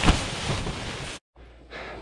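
A push broom knocking up against a high tunnel's plastic film from inside to dislodge heavy wet snow: one sharp knock near the start, then a rustling hiss. It cuts off abruptly just after a second in.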